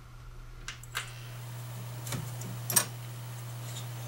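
A few sharp metallic clicks and knocks as a cable is worked loose from a lead-acid battery terminal, the loudest about two-thirds of the way through, over a steady low hum.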